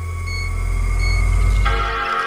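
A robot's solar-charging sound effect: a loud low drone with steady tones and soft beeps about every two-thirds of a second. About 1.7 s in, the Apple Macintosh startup chime sounds as a rich sustained chord, signalling that the battery is fully charged.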